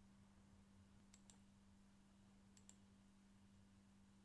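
Near silence with a low steady hum, broken by faint computer mouse clicks: two quick pairs, about a second in and again about a second and a half later.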